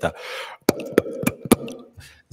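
A short breath, then four quick popping 'p'/'b' plosives spoken right into a handheld microphone fitted with a pop filter, about a quarter to a third of a second apart, to try out how well the filter softens the pops.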